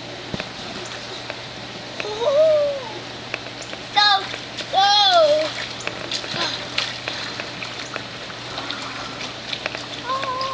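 Pool water lapping and trickling around an inner tube, with small splashy ticks a few seconds in from the middle on, over a steady low hum. Three short wordless high-pitched calls, rising then falling, stand out about two, four and five seconds in.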